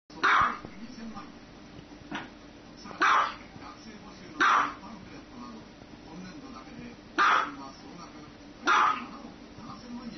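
Small white dog barking: six single sharp barks, a second or more apart, the second one softer.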